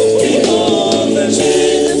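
Ghanaian gospel music: a choir singing held chords, with one voice line wavering in pitch about half a second in.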